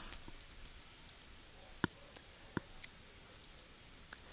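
A few faint computer mouse clicks, the two clearest a little under a second apart in the middle, over quiet room tone.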